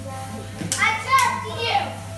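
Young children shouting and squealing excitedly in rough play, the cries rising and falling about halfway through.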